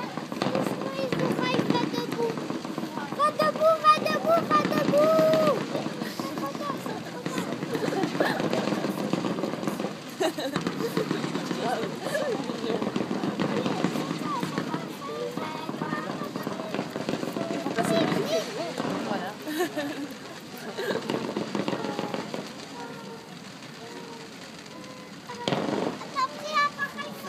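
Fireworks display going off: scattered bangs and crackling, with a cluster of sharp reports near the end, under people talking close by.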